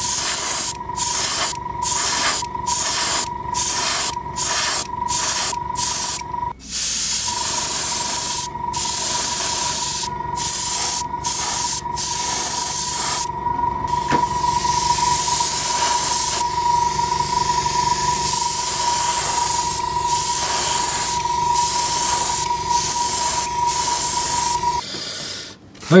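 Airbrush spraying thinned clear lacquer, a hiss of air and paint. For the first few seconds it comes in short trigger bursts about twice a second, then runs in longer continuous passes, with a steady tone underneath.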